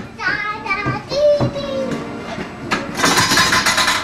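Children's voices: high-pitched calling and chatter, with a held note about a second in and a burst of noisy shouting near the end.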